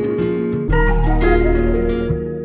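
Harp patch from the Massive software synthesizer playing a plucked melodic figure in a beat. A deep bass note comes in underneath about two-thirds of a second in.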